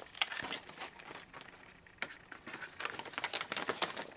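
Clear plastic zip bag and paper sheet crinkling and rustling as they are handled, in short irregular crackles that grow busier in the second half.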